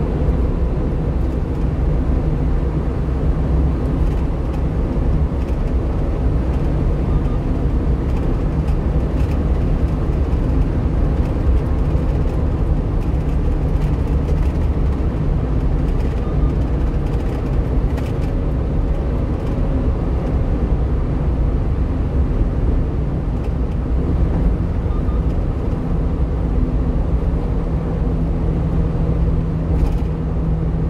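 1-ton refrigerated box truck cruising on a highway: steady engine and tyre rumble, with a low hum that grows stronger in the last quarter.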